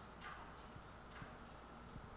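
Near silence: quiet classroom room tone with a couple of faint ticks.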